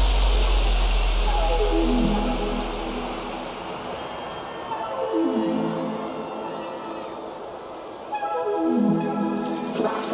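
Electronic dance music from a live DJ set in a breakdown: the heavy bass fades out over the first few seconds, leaving sustained synth chords that swell in three times, a few seconds apart.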